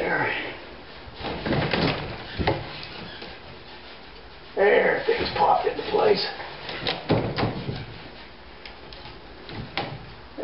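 Pieces of wood being handled and fitted against wooden wall framing: several sharp knocks, about two and a half seconds in, around seven seconds and near the end, with some rubbing and a man's low muttering between them.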